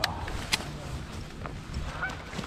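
Dry grass cover rustling close to the microphone, with two sharp clicks about half a second apart.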